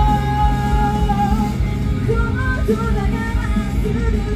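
Live band music with a female vocalist singing into a microphone. She holds one long note for about the first second and a half, then sings a moving melodic line over loud, continuous accompaniment.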